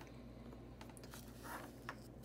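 Faint, sparse small clicks and taps from hands handling a plastic fountain pen and a glass ink bottle, over a low steady hum.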